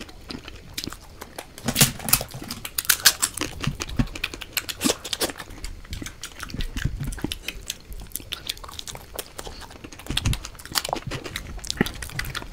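Close-miked eating: irregular wet mouth smacks and chewing, with soft tearing of makki ki roti (maize flatbread) by hand.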